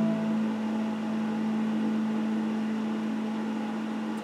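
Electric guitar with a single low note ringing on and slowly fading, the other strings of the last chord already died away, over a faint hiss.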